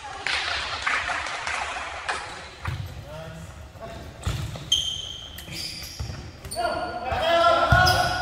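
Futsal game on a gym floor: the ball thuds off feet and the floor a few times, with short high sneaker squeaks in the middle, and players calling out near the end.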